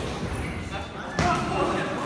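A single sharp thud a little over a second in, from the boxers sparring in the ring, with voices around it.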